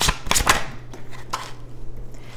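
A deck of tarot cards being shuffled and handled. It makes a quick cluster of sharp snaps in the first half second and another snap about a second and a third in.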